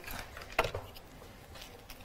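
Faint handling noises: a few soft taps and clicks as small ribbon ruching tools are picked up and handled on a table. The clearest tap comes about half a second in.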